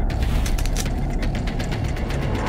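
Title-sequence sound design of a TV programme: rapid mechanical ticking and ratchet-like clicks over a heavy, steady low bass.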